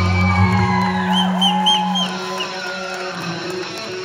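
Live rock band with electric guitar, bass guitar and drums holding a closing chord, with short sliding high notes over it; the low notes stop about half a second in, the rest rings out and drops away after two seconds.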